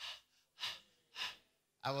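A man panting: three short gasps for breath about half a second apart, acting out breathlessness from thin air at high altitude. A spoken word follows near the end.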